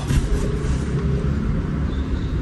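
A steady low hum inside a car cabin, with a faint thin tone in the first half.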